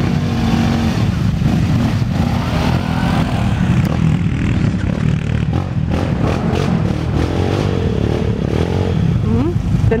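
Quad bike (ATV) engines revving and running under load as the machines drive through the track.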